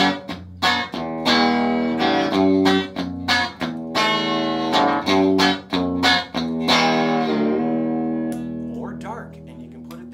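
1966 Guild solid-body electric guitar with Franz pickups, played through an amplifier with its tone circuit set to bright. A rhythmic run of picked chords ends on a chord that rings out and fades near the end, followed by a few quieter plucked notes.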